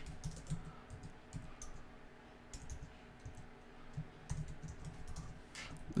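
Typing on a computer keyboard: faint, irregular keystrokes, with a quicker run of them about four seconds in.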